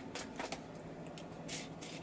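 Faint handling noise: a few soft clicks and rustles as the recording phone is moved on its spring-loaded holder arm.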